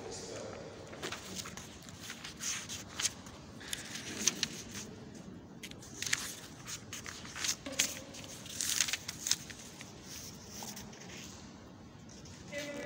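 Paper rustling and handling at a music stand, such as pages being turned: a string of short, sharp rustles and clicks at irregular intervals.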